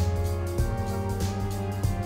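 Background film-score music: sustained notes over a steady low bass, the notes changing about every half second.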